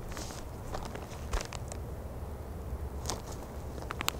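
A raccoon biting and tearing at a plastic zip-top bag: irregular crinkling and crackling of the plastic with sharp clicks now and then.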